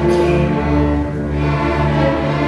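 Student string orchestra playing: violins, violas and cellos bowing long held notes together in a moving chord.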